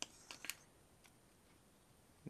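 A few faint clicks in the first half second, then near silence: small handling noises while a soldering iron joins copper wire to the tops of 18650 cells.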